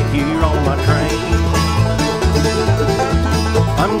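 Bluegrass band playing a short instrumental fill between sung lines: banjo on a 1995 Gibson Granada Flying Eagle, a 1968 Martin D-28 acoustic guitar, a Northfield mandolin and upright bass on a steady beat. A singing voice comes back in at the very end.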